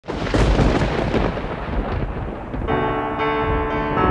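A rumble of thunder, giving way about two and a half seconds in to slow, sustained piano music.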